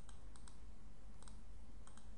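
A few faint computer keyboard keystrokes: short, light clicks at uneven spacing over a steady low background hiss.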